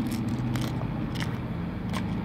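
Steady low drone of a car's cabin while driving, with about four short clicks spread through the two seconds.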